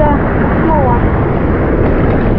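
Steady wind noise on the microphone over the wash of ocean surf, with brief snatches of a voice.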